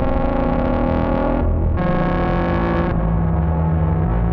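Synthesizer drone jam: a low, steady bass tone with higher sustained notes layered over it. One enters right at the start and another about two seconds in, each lasting a second or so.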